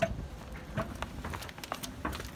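Faint, scattered clicks and rustles over a low rumble: handling noise from a phone being carried while walking.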